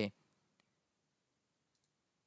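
A spoken word ends, then a few faint computer mouse clicks follow, with a close pair of them near the end.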